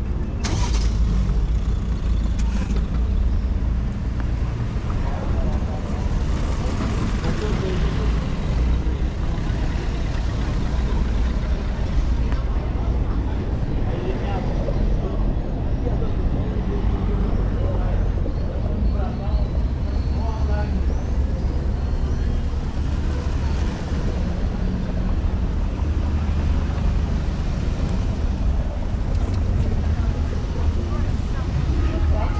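Street traffic ambience: cars running and passing on a cobbled road over a steady low rumble, with passers-by talking at times.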